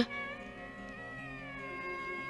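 Soft background music: a sustained held chord with a slight waver in pitch.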